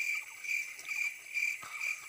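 A small animal calling: a high, steady-pitched chirp pulsing about three times a second.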